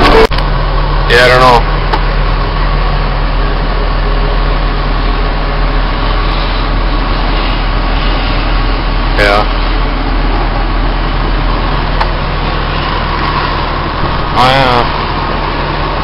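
Engine of a snow-removal wheel loader running steadily, heard from inside its cab as a constant low drone.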